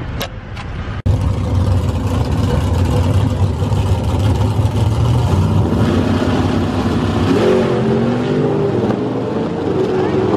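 Drag racing car engine running loud and low at the starting line, then launching down the strip, its pitch climbing in steps as it pulls away. The first second is quieter road noise from inside a moving car.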